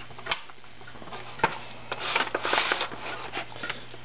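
Hands rolling crab-stuffed fish fillets in an aluminium foil pan: soft rubbing and handling noises with two sharp clicks in the first half, over a steady low hum.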